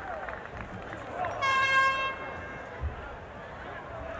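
A horn sounds once, a steady single-pitched tone lasting under a second, about a second and a half in, over the murmur of a stadium crowd.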